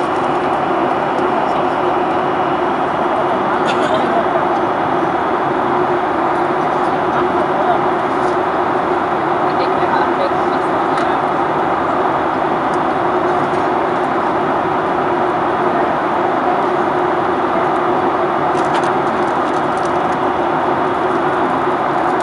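Steady in-flight cabin noise of a Boeing 737-800 from a forward window seat: an even rush of airflow and the CFM56 turbofans, with a constant low hum under it and a few faint ticks.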